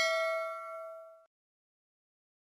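Notification-bell ding sound effect ringing out: a few clear steady tones that fade and then cut off suddenly just over a second in.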